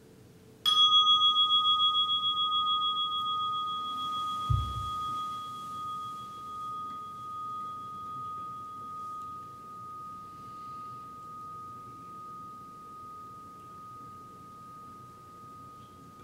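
Meditation bell struck once, ringing a clear high tone that wavers in loudness as it slowly fades away, marking the close of the sitting. A short low thump comes a few seconds after the strike.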